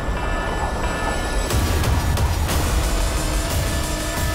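Trailer sound design: a heavy low rumble, like a train in motion, under dark music whose held tones swell about a second and a half in.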